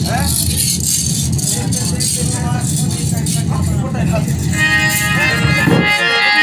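Live folk music from hand drums with jingling rattles. About four and a half seconds in, a held chord of several steady tones joins them.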